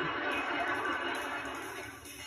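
Sitcom studio audience laughing, fading away toward the end, played through a television's speaker.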